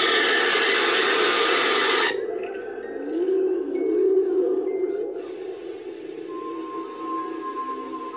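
Horror-video jumpscare sound: a loud harsh burst of noise that starts suddenly as the creepy face appears and cuts off after about two seconds. Eerie low gliding tones follow, then a steady held high tone with a faint hiss.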